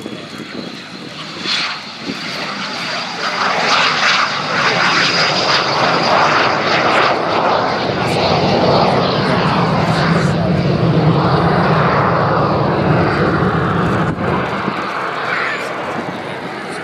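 L-39C Albatros jet trainer's Ivchenko AI-25TL turbofan running at take-off power as the aircraft lifts off and climbs away, with a high thin whine over the jet noise. The sound swells to its loudest about three seconds in, holds, and drops off near the end.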